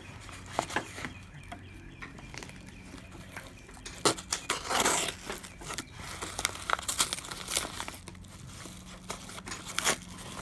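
A manila mailer envelope being slit with a pocketknife and pulled open by hand: paper crinkling and tearing in irregular rustles and clicks. The loudest rustle comes about five seconds in, with a run of crackles around seven seconds.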